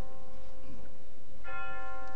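A bell ringing: the tone of one stroke dies away slowly and a fresh stroke comes about one and a half seconds in, the two strokes about three seconds apart.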